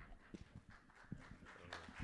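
Faint, scattered footsteps and shuffling on a stage floor as a man walks away from the pulpit, with a few soft knocks.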